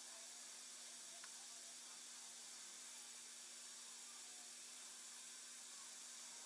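Near silence: a faint steady hiss with a low hum underneath, and one faint tick about a second in.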